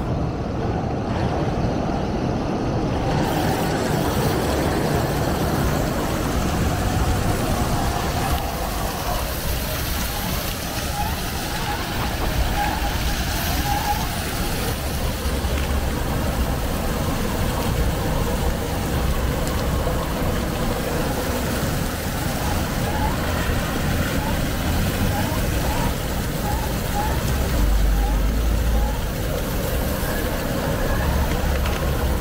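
City-square ambience: the steady hiss and splash of ground-jet fountains mixed with road traffic and the voices of passers-by. The traffic rumble swells now and then.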